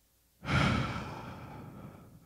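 A man's long, breathy sigh out into a handheld microphone. It starts suddenly about half a second in, is loudest at first, and trails off.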